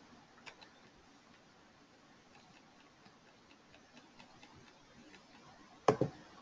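Quiet room tone with scattered faint ticks, then one sharp click near the end.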